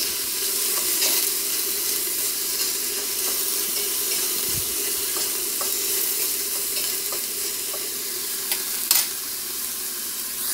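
Frozen mixed vegetables with onion and garlic sizzling steadily in olive oil in a stainless steel pan as they are stirred, with a few light taps of the utensil against the pan, the clearest near the end.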